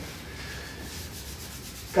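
Pause in speech: steady room noise with faint rustling, like handling noise on a microphone.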